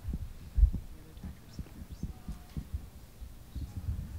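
Microphone handling noise: irregular low bumps and knocks, the loudest about half a second in.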